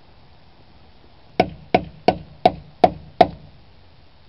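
Six quick hammer blows, about three a second, starting a little over a second in, each with a short metallic ring: a socket being pounded onto a stripped lug nut so it can grip the damaged nut.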